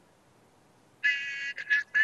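Near silence for about a second, then a woman's voice comes in suddenly over a video-call link, high-pitched and tinny, with little low end.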